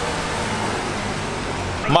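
Porsche Macan SUV driving past in a parking garage: a steady low engine hum with road noise.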